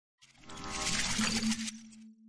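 Channel logo sting: a metallic, shimmering swell with a bright ding a little over a second in. It cuts off suddenly, leaving a low steady hum that fades out.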